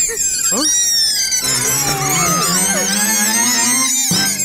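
Cartoon soundtrack of music and sound effects: a dense chorus of high squeaky chirps sliding up and down, with a character's short grunts. A low tone climbs steadily in pitch from about a second and a half in.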